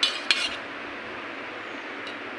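Steel plate clinking twice in quick succession as it is handled, each clink ringing briefly, over a steady background hiss.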